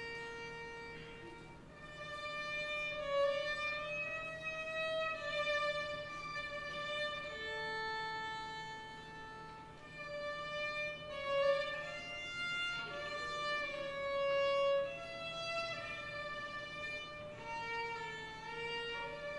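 High school orchestra playing a slow piece, the violins carrying a melody of long held notes, with swells in loudness.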